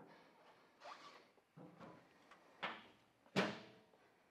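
A few faint, scattered knocks and clunks, the two sharpest near the end, each dying away quickly.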